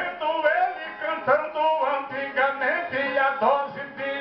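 Nordeste cantoria de viola: ten-string Brazilian violas plucked in accompaniment while a man sings a verse in a bending, melismatic line.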